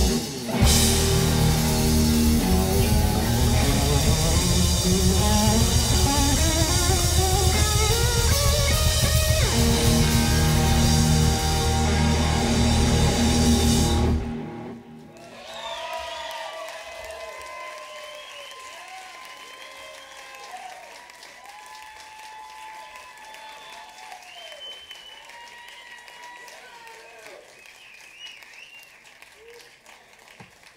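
Live rock trio (electric guitar, electric bass and drum kit) playing loud, with a line climbing steadily in pitch, until the song stops abruptly about halfway through. Then audience applause and cheering, with voices calling out, dying away.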